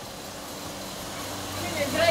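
Automatic packaging machine running with a steady hum and hiss; a voice speaks briefly near the end.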